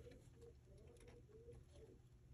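A bird cooing faintly: a quick run of about six short, low notes, with a few faint clicks alongside.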